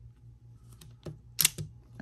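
Klein Tools self-adjusting automatic wire stripper squeezed on a wire: a few faint mechanical clicks as the jaws grip, then one sharp snap about one and a half seconds in, followed by a smaller click, as the blades cut and pull the insulation off.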